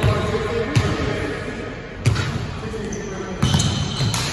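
Basketball bouncing on a hardwood gym floor, four irregular bounces, under the chatter of players' voices.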